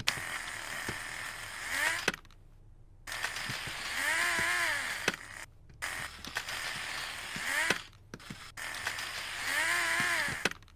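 Small Lego Technic electric motor whirring as it turns plastic gears against a rack to slide a retractable bridge deck, running in several spells broken by short pauses. Its pitch rises and falls in arcs as it speeds up and slows, with clicks from the plastic gear teeth.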